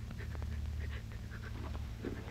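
Soft, breathy laughter over the steady low hum of an old film soundtrack.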